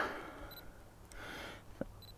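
Quiet handling of a camera on a tripod while its focus is checked: a small sharp click near the end and a short high blip about half a second in.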